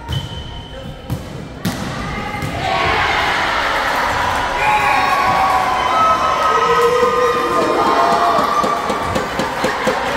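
A volleyball hit with a few sharp thuds in the first two seconds, then players and spectators shouting and cheering, the voices swelling about three seconds in and keeping on, echoing in a large sports hall.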